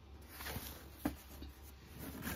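Faint handling of a cardboard subscription box as it is lowered and opened, with a light click about a second in.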